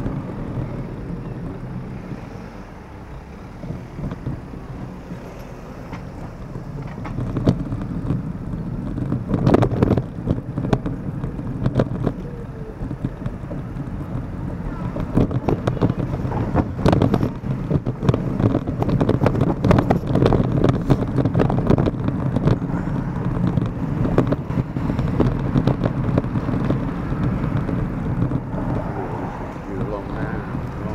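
Wind buffeting the microphone of a camera moving along a roadside pavement, over the steady sound of passing road traffic, with frequent short knocks.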